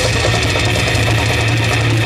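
Death metal band playing live through a PA: heavily distorted, low-tuned guitars and bass hold a steady low droning riff over very fast drumming.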